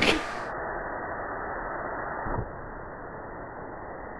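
Compressed-air jet hissing steadily, muffled, with its high end cut off. A soft low thump comes about two and a half seconds in, after which the hiss is a little quieter.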